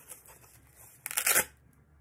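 Felt cut-out pulled off self-adhesive Velcro (hook-and-loop) dots on a wooden banner pennant: a short, loud rip about a second in, after a little rustling.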